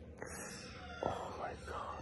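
A person whispering or breathing in a breathy, unvoiced voice, with a sharp click about a second in.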